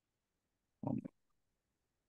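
Near silence broken about a second in by one short, low voiced murmur, like a hesitant 'mm' from a man.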